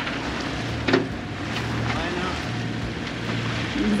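Wind on the microphone and water washing past the hull of a sailboat under way in light air, an even hiss with a steady low hum beneath it. Two short knocks, one near the start and one about a second in.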